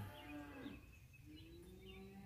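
Cattle mooing faintly: a short low call at the start and a long one that begins about halfway through.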